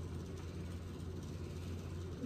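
Steady low hum and hiss from a running fan, with no distinct events.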